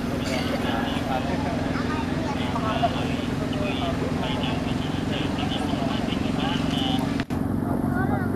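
A steady motor hum under indistinct background voices. The sound cuts out for an instant near the end.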